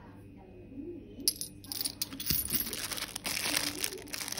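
Metal wax-seal stamp heads clicking together in the hand. From about two seconds in, a louder, dense crinkling of the plastic wrap around a pack of tealight candles.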